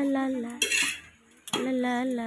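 A metal utensil clatters against steel cookware about half a second in. Before and after it, a voice holds long, wavering sung notes.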